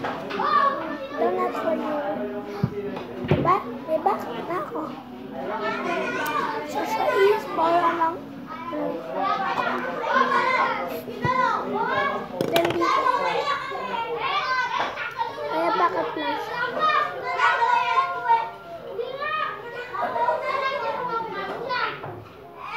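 Children's voices chattering and calling out throughout, with a few sharp knocks on the table.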